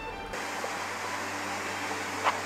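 Background music cuts off about a third of a second in. It gives way to a steady, even hiss of outdoor background noise picked up by the camera microphone.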